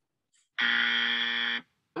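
Game-show wrong-answer buzzer sound effect: one flat, steady buzz about a second long that cuts off abruptly, marking an incorrect guess.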